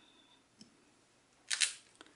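Clear acrylic stamp block lifted off cardstock after stamping, giving one short, sharp double click about one and a half seconds in, after a faint tick earlier.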